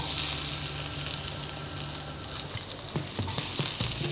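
Sliced onion hitting a hot wok of oil with frying ginger and garlic. It sizzles suddenly as it lands, then keeps sizzling steadily, easing slightly, with a few light clicks near the end.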